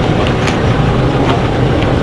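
Loud, steady outdoor background noise with a low hum and scattered sharp clicks.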